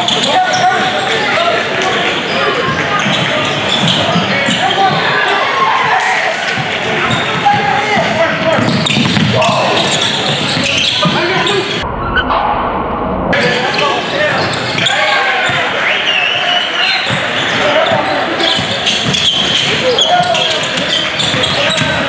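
Game sound in a large gym: many voices from players and spectators talking and calling out, echoing in the hall, with a basketball being dribbled on the hardwood floor. About halfway through the sound is briefly muffled, where the footage is cut.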